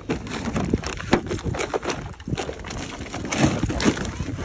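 Irregular rustling and knocking of fabric bags being handled and moved close to the microphone.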